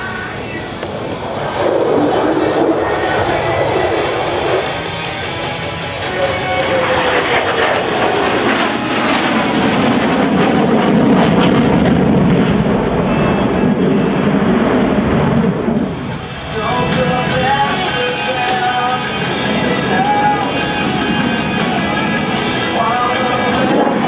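F-16 fighter jet's engine roar swelling as it manoeuvres overhead, loudest through the middle, with a descending pitch partway through and a brief dip before the roar returns. Music plays underneath.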